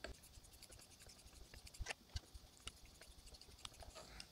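Faint soft scraping of a Japanese straight razor drawn in light laps, under its own weight, across a wet Japanese natural finishing stone with a light slurry. Scattered small ticks run through it, a few sharper ones around the middle.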